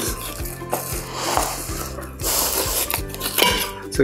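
A filleting knife cutting through a whole scaled barramundi, heard as about three scratchy scraping strokes over steady background music.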